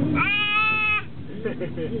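Toddler letting out one high-pitched squeal, held for under a second, with a small rise in pitch at the start.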